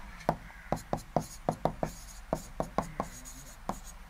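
A stylus tapping and writing on an interactive touchscreen board, making a quick, irregular series of sharp clicks as a colour is picked and numbers are written.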